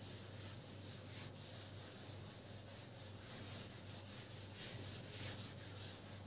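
Faint rubbing strokes of a handheld duster wiping marker writing off a whiteboard.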